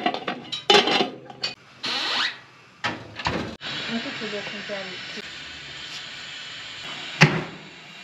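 Metal lid clattering onto a large aluminium cooking pot, then a steady hiss from a gas-fired drum bread oven, with one sharp knock near the end.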